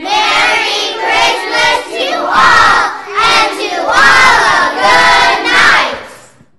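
A large group of children's voices sounding loudly in unison, in several phrases about a second long that rise and fall in pitch, starting suddenly and stopping just before the end.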